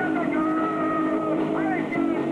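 Amateur garage rock band playing loud: distorted electric guitar and bass through amps holding sustained notes, with a note bending upward about one and a half seconds in.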